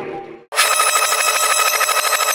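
A loud, rapidly pulsing electric bell ringing, starting abruptly about half a second in after the earlier sound fades out.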